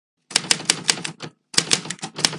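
Typewriter keys clacking as a sound effect, about five strikes a second, in two quick runs with a brief pause in between.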